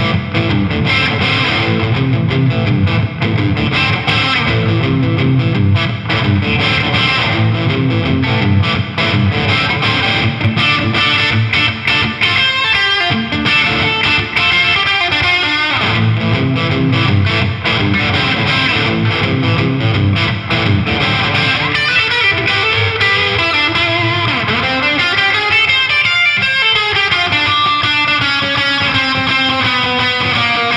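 Gibson Les Paul played through an MXR Classic Distortion pedal into a Marshall DSL100HR amp, the distortion set between 10 and 11 o'clock for a fat, warm sound. Heavy distorted chord riffs give way, about two-thirds through, to single-note lead lines with string bends.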